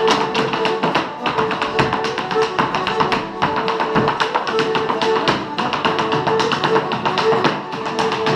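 Irish brush dance: rapid hard-shoe taps on a wooden floor, many strokes a second, over live Irish traditional music with guitar and a held melody line.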